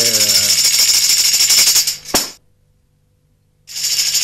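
A tambourine (def) shaken rapidly, its jingles rattling for about two seconds and ending with a single knock; after a short silence the shaking starts again near the end. In Karagöz shadow play this shaking marks a puppet leaving or entering the screen.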